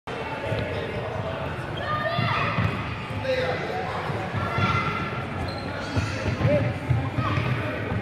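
A football thudding on a wooden sports-hall floor as it is dribbled and kicked, with children's high voices shouting and calling over it, all echoing in the large hall.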